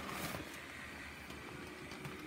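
Small, cheap electric blower fan of a Gemmy inflatable penguin running with a steady low hum as it inflates the nylon figure, with a brief rustle near the start.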